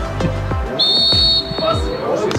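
A short, high whistle blast a little under a second in, held for about half a second and then trailing off, over electronic background music with a steady kick-drum beat.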